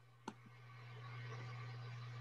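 A single computer-mouse click, then a low steady hum with faint hiss from a video-call microphone.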